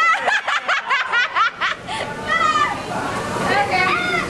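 A group of women laughing and shrieking in excitement: a quick run of short, high-pitched laughs in the first two seconds, then mixed chatter and laughter.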